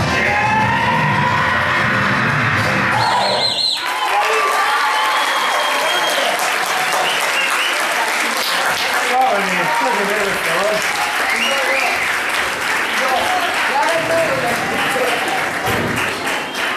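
Dance music playing for a stage performance cuts off about four seconds in. An audience then applauds, with voices calling out over the clapping.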